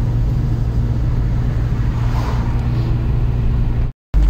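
Steady engine and road noise inside a moving car's cabin, a low hum with an even rush of tyre noise over it, breaking off abruptly at the very end.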